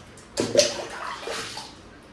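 Water thrown onto a tiled bathroom floor: one splash about half a second in, fading as it spreads and runs off.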